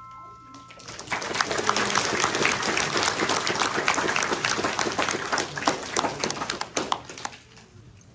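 The last chord on a Yamaha grand piano rings out through the first second, then an audience applauds for about six seconds, tapering off near the end.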